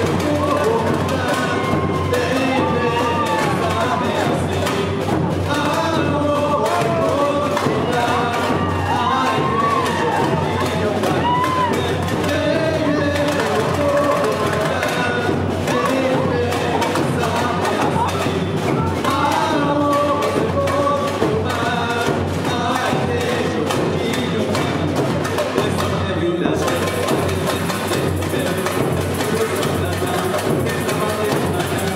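Live samba music: a percussion band keeping a fast, steady beat, with singing over it.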